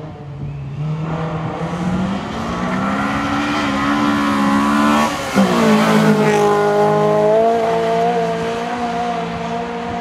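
Honda Civic EK4 rally car's four-cylinder VTEC engine under hard acceleration as the car comes toward the listener, its pitch climbing for about five seconds. The pitch drops sharply about five seconds in, then holds and creeps up again as the car comes loudest.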